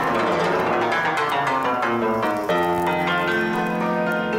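Instrumental background music led by piano, with sustained chords; a new chord comes in about two and a half seconds in.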